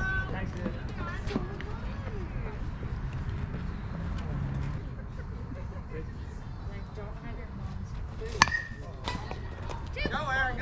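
Scattered distant voices of players and spectators, then one sharp crack of a softball bat hitting the ball about eight seconds in, ringing briefly.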